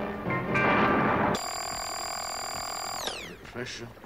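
Eerie dramatic incidental music, then a steady, high electronic tone with many overtones about a second and a half in, which slides down in pitch and fades out about three seconds in.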